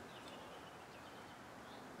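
Faint steady outdoor background hiss with a few soft, short bird chirps, near the start and again near the end.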